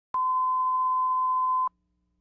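Line-up test tone played with colour bars at the head of a videotape, marking the audio reference level: one steady, pure beep about one and a half seconds long that cuts off suddenly.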